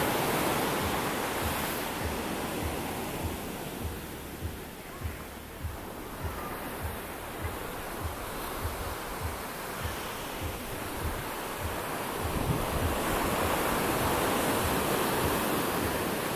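Sea surf washing onto a sandy beach, with wind on the microphone and a run of low thuds about twice a second through the middle.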